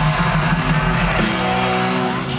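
Live rock band music with distorted electric guitars, settling about a second in into a held, ringing chord.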